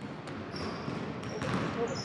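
Basketball practice in a gym: basketballs bouncing on the wooden court with occasional sharp knocks, under indistinct voices echoing in the large hall.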